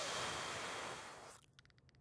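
A man's long, forceful exhale through the mouth, a breathy rush that fades out after about a second and a half, on the effort of rising onto his toes in a weighted calf raise.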